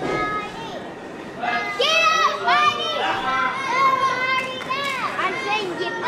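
Children in the audience shouting and cheering in high-pitched voices, starting about a second and a half in and calling out again and again.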